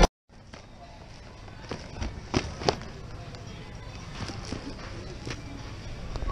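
Plastic video game cases clicking against each other as a hand flips through a bin of them: a handful of short, sharp clacks over faint background voices.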